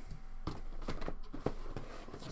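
A hand rummaging in a cardboard shipping box, with rustling and a few light knocks and scrapes as a boxed figure is drawn out.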